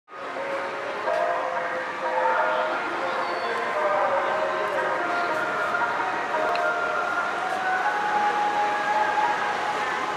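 Harmonium playing long held notes and chords that change every second or so.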